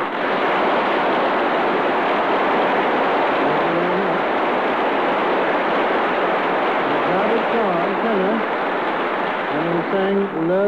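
Studio audience applauding, a long, even round of clapping straight after a musical act ends, heard on a narrow-band 1939 radio broadcast recording. A man's voice begins to speak faintly under the applause partway through.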